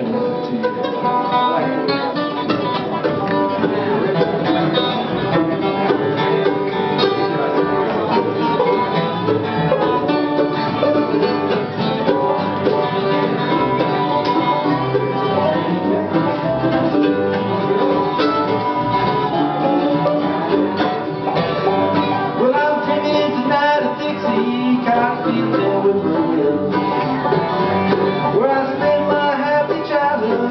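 Bluegrass band playing a song at a steady tempo: acoustic guitar, banjo, mandolin, fiddle, upright bass and a lap-played steel guitar, with many fast plucked notes.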